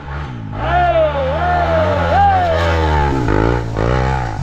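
Enduro dirt bike engines running: a steady low engine note with revs rising and falling over it as a rider climbs the trail.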